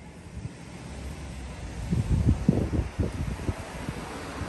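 Wind buffeting the microphone: a low rumble that turns into a run of uneven gusts about halfway through.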